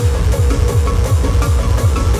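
Hardcore electronic music from a DJ set: a fast kick drum, each hit a short falling boom, about four a second, under a held synth tone.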